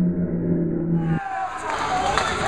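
Low, muffled, long-held tones, cut off abruptly about a second in by the live sound of a bowling hall: a man's raised, shouting voice over the noisy background of the lanes.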